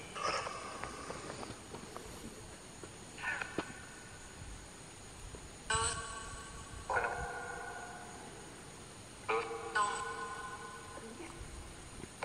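Spirit box output: short, flat-pitched electronic fragments, about six of them a second or two apart, each cutting off abruptly.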